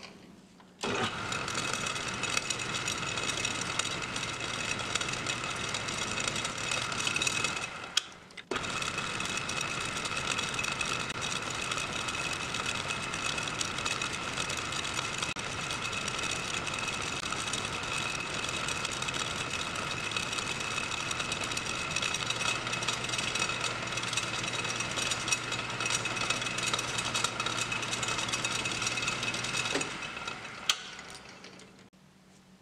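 Metal lathe running and cutting metal, a steady whine with a few constant tones as the spinning chuck turns the part and chips come off the tool. The sound comes in about a second in, fades and drops out briefly near eight seconds, then resumes, with a low hum joining in the last third.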